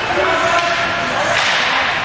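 Ice hockey play on a rink: a voice calls out early, then about a second and a half in comes a short scraping swish on the ice.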